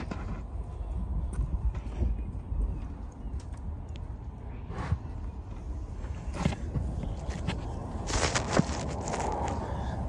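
Wind noise on a phone microphone, with footsteps on pavement and scattered clicks and knocks from the phone being handled. A louder stretch of handling noise comes about eight seconds in.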